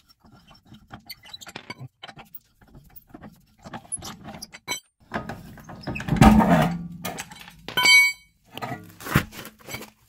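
Car wheel coming off a jacked-up hub: lug bolts being spun out by hand with scattered small metal clicks and clinks, then a heavier thud and scrape about six seconds in as the wheel comes free. A short metallic ring near eight seconds and a sharp knock shortly before the end.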